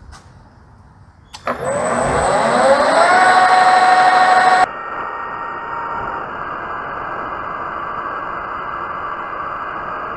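Metal lathe motor switched on about a second and a half in, spinning up with a rising whine that levels off into a steady run. A little before halfway the sound changes abruptly to a lower, steadier running noise, and by the end the tool is facing the aluminium part.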